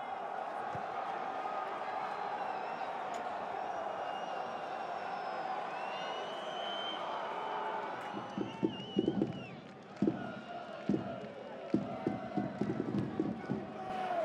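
Football stadium crowd noise: a steady roar of fans that gives way about eight seconds in to a quieter, choppier mix of shouts and short knocks.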